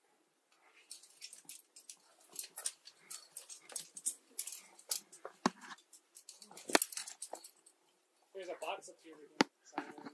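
Quick, irregular clicks, clinks and scrapes of climbing hardware and hands on rough conglomerate rock as a climber handles a quickdraw and scrambles upward, with two sharper knocks in the middle. A short breathy vocal sound comes near the end.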